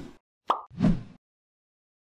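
Animated end-screen sound effects: a series of short pops, the tail of one right at the start, a small sharp pop about half a second in and a fuller pop just before one second in.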